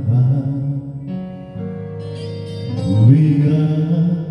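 Karaoke machine backing track playing a slow ballad, with a man singing along over it: a sung line early on, a stretch of sustained instrumental chords, then his voice sliding up into the next line about three seconds in.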